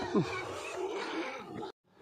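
Domestic pigs grunting, with one short falling grunt about a quarter of a second in; the pigs sound hungry, typical of pigs asking for their feed. The sound cuts off abruptly near the end.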